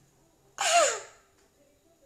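A man's single exclamation, "Ah", about half a second in, sliding down in pitch.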